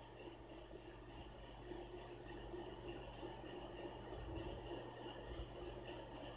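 Faint, steady hiss of meat and masala gravy cooking in an open aluminium pressure cooker as it is stirred with a steel spoon.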